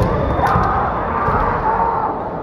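Kendo fighters' kiai shouts, long held cries, with a sharp knock about half a second in, over the din of a crowded kendo hall.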